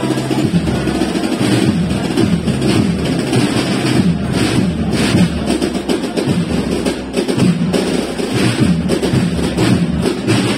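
A wind band playing processional music with a steady drum beat, bass drum and snare strokes running under the sustained band sound.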